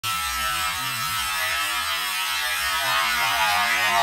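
Battery-powered electric ice auger running steadily at speed as its spiral bit bores down into lake ice, a motor whirr mixed with the hiss of the blades cutting the ice.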